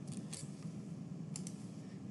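Short, sharp clicks of computer keys and mouse buttons: a pair of quick clicks near the start and another pair about a second and a half in, over a faint steady room hum.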